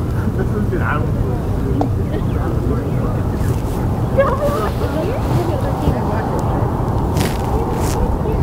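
Outdoor ballfield ambience: scattered distant voices of players and spectators calling out over a steady low rumble, with two brief hiss-like bursts near the end.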